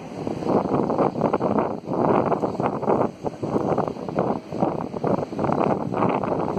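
Wind buffeting the microphone: a rough, rumbling noise that surges and drops in uneven gusts.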